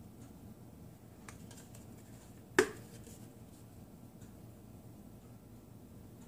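Plastic shaker of five-spice powder being shaken and handled over a metal cooking pot: a few faint taps, then one sharp knock with a short ring a little past two and a half seconds in, over a low steady background hum.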